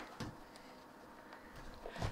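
Faint handling sounds of a tablet in a patterned cover being folded shut and set down: a soft knock just after the start, then quiet room tone with a low thud near the end.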